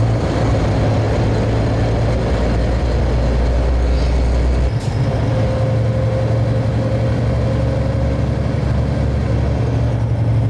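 Scania long-haulage truck's diesel engine running under way with road noise, a steady low drone whose lowest component drops away about halfway through.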